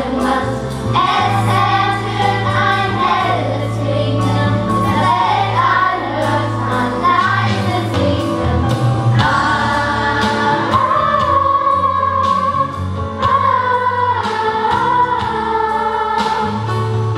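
A chorus of children singing together over instrumental accompaniment with a steady bass line.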